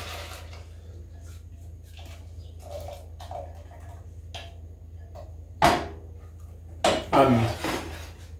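Custard being poured from a glass bowl into a steel saucepan while a rubber spatula scrapes the bowl out, making faint soft scrapes and taps. A single sharp clack of kitchenware comes a little past halfway, with a steady low hum underneath.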